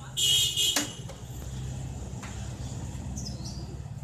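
Mitsubishi Strada L200 pickup's engine running steadily with the hood open, a low even hum. A loud, brief high-pitched hiss comes just after the start and lasts about half a second.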